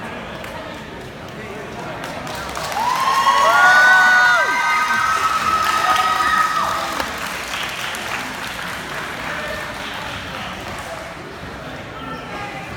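Spectators in a large hall cheering and whooping, with several long held shouts overlapping near the middle over steady crowd chatter.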